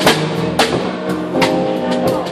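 A live piano, bass and drums trio playing an instrumental passage: sustained keyboard chords and bass under a drum kit, with three sharp drum hits spaced unevenly across the two seconds.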